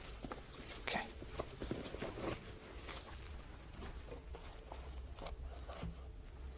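Faint rustling and a scattered series of soft clicks as a blood pressure cuff is handled, bundled up and set down, with a few soft footsteps.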